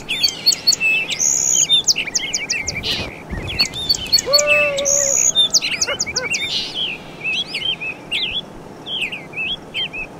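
Songbirds chirping, many quick high calls and rapid repeated notes overlapping, with one lower, held call about four seconds in.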